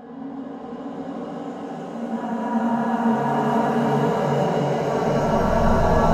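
Film score music: held, layered tones that grow steadily louder.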